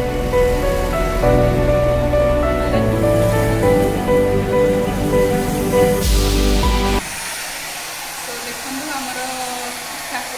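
Background music with a steady bass, cut off suddenly about seven seconds in. A handheld hair dryer then blows steadily to the end.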